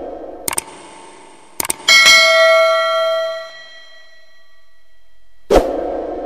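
Subscribe-button end-screen sound effects: a few quick mouse-style clicks, then a bright bell-notification ding that rings and fades over about a second and a half. A sudden burst of sound follows near the end.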